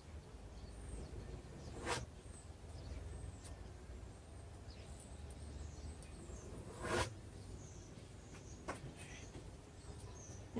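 Quiet background noise with a steady low hum and faint high chirps, broken by two soft knocks about two and seven seconds in and a smaller click near the end.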